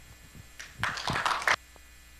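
A brief smattering of applause from a small audience, lasting about a second, over a steady low mains hum.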